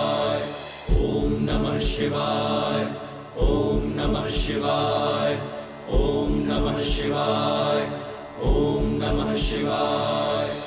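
Devotional background music: a chanted mantra over a sustained drone, the phrase repeating about every two and a half seconds, each time opening with a few low drum beats.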